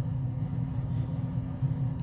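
Steady low background hum and rumble, unchanging, with a faint constant tone in it.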